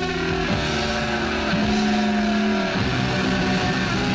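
Rock music: electric guitar feedback holding long sustained notes that swoop down and back in pitch a few times, in a live recording.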